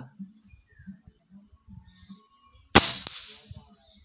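Single shot from a PCP air rifle nearly three seconds in: one sharp crack with a short ring-out, followed about a quarter second later by a fainter click. A steady high cricket chirr runs underneath.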